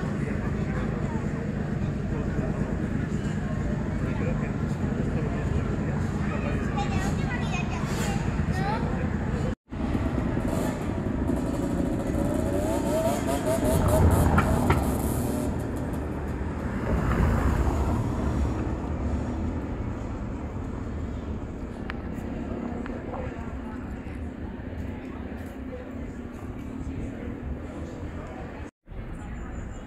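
Town street ambience: indistinct voices of people about, and a motor vehicle passing, loudest a little past halfway through.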